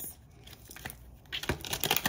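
Tarot deck being shuffled by hand: quiet at first, then a rapid papery clatter of cards starting about one and a half seconds in.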